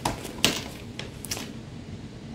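A few short sharp clicks and knocks of small items being handled, the loudest about half a second in: wallflower refills and their packaging picked out of the haul.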